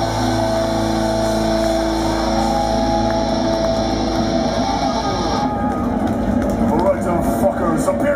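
A metal band's last chord ringing out through the guitar amps with a high wash over it, which stops about five and a half seconds in. The crowd then cheers and shouts.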